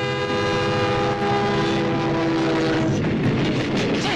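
A train horn sounds one long, steady chord for about three seconds, then cuts out as the rushing, rumbling noise of the train passing close by takes over.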